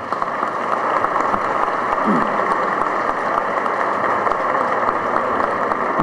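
Audience applauding steadily throughout, with a short voice call about two seconds in.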